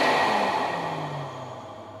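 Lay-Z-Spa pump unit's massage air blower running, a rush of air with a faint whine, working with the deflation adapter to draw air out of the tub. The noise fades steadily, and a low hum drops in pitch midway.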